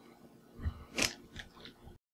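Handling noise from a small metal-cased network switch being moved in the hands: a soft low thump, then a sharp click about a second in, followed by two fainter clicks.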